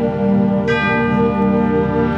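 High school concert band of brass and woodwinds playing a held chord. About two-thirds of a second in, a bright high note joins on top.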